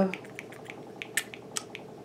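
Small plastic pump dispenser on a face-mask bottle being pressed several times, giving a few faint, sharp clicks while the new pump is primed.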